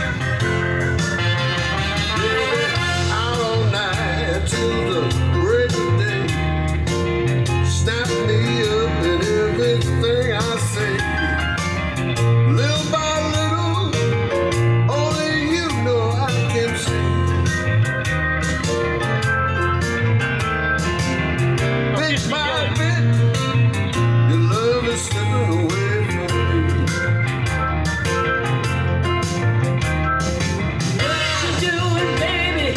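Blues music with guitar over a steady bass beat, playing through a car's audio system and heard inside the cabin.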